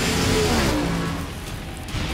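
Car engine whose pitch falls over the first second or so, then drops away in level.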